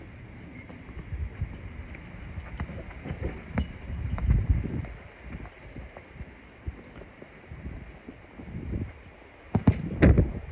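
Low wind rumble buffeting the microphone, with a few sharp knocks of a football being kicked on an artificial-turf pitch; the loudest kick comes near the end.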